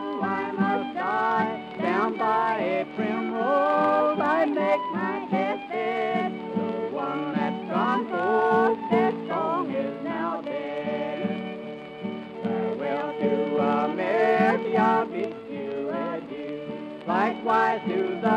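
Old-time Texas-style fiddle tune with guitar backing; the fiddle slides and bends between notes over steady chords.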